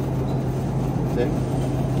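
Steady low hum and rumble of a supermarket's open refrigerated display case, with faint voices about a second in.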